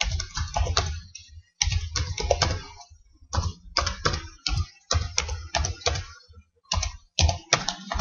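Computer keyboard being typed on in quick runs of keystrokes, broken by short pauses.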